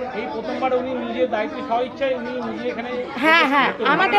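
Speech only: several people talking at once, with a louder, high-pitched voice rising and falling from about three seconds in.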